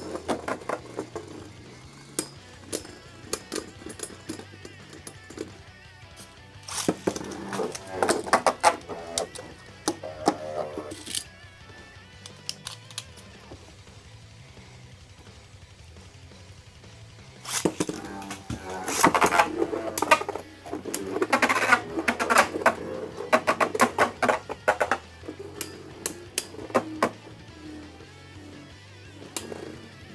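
Spinning Beyblade tops clacking against each other and the plastic stadium, heard as scattered sharp clicks. There is a quieter stretch in the middle, then a fresh round of loud clashes starts about eighteen seconds in, with music underneath.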